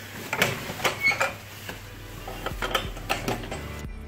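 Rustling of jackets and backpacks and handheld-camera handling noise, with scattered light clicks and knocks.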